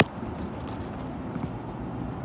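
Footsteps crunching on loose gravel: one sharp crunch at the start, then a few faint ones, over a steady low outdoor rumble.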